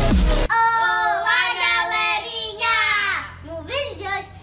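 Electronic dance music cuts off about half a second in, then a young girl sings a drawn-out, sing-song line in a high voice, breaking into a few short spoken syllables near the end.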